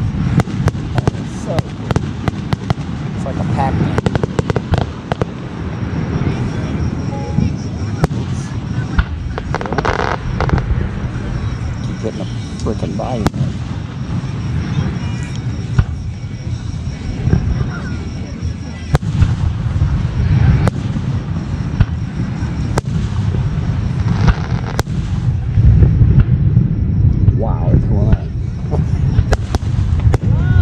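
Aerial fireworks display: shells bursting in a rapid, irregular string of bangs and crackles over a continuous low rumble. The booming grows heavier near the end.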